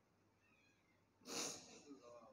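Near silence, then about a second in a man's short, sharp intake of breath close to the microphone, trailing off briefly.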